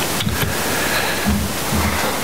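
Steady hiss of background noise with a few soft, low thumps.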